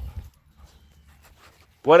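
A man's voice calling a dog to come, trailing off at the start and starting again near the end, with a quiet stretch in between that holds only faint ticks and rustles.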